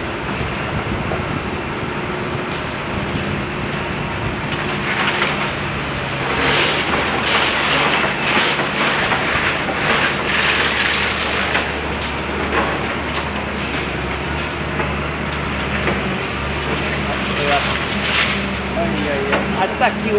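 Tracked demolition excavator's diesel engine running steadily while its hydraulic jaw breaks into a pile of brick and concrete rubble. The debris crunches and clatters, busiest from about five to twelve seconds in and again near the end.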